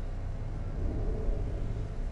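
A steady low rumble and hum, with no sharp events.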